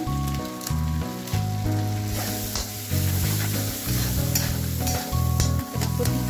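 Onion-tomato masala sizzling as it fries in oil in a metal kadhai, with a spatula scraping and clicking against the pan as it is stirred. Background music with a changing bass line plays underneath.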